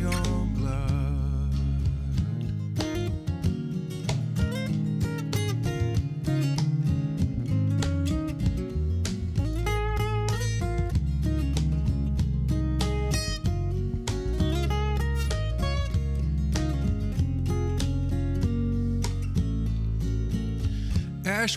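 Instrumental break of a folk song: acoustic guitar playing over electric bass and cajón, no singing.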